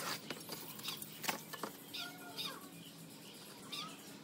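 A few light knocks and handling noises from working a thermocol foam sheet on a plastic table, followed by several short animal calls, about two seconds in and again near the end.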